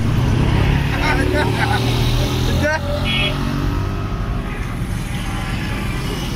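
Roadside traffic: a motor vehicle's engine running close by, loudest in the first half and easing off after about three seconds, with scattered men's voices.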